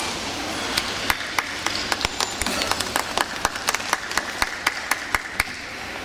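Scattered clapping from a small crowd in an ice rink, with many separate, irregular claps from about a second in that thin out near the end.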